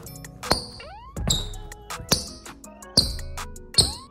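Rubber outsoles of Nike LeBron 21 basketball shoes squeaking on a hardwood floor: five sharp, loud squeaks a little under a second apart, the sound of grippy traction. Background music plays underneath.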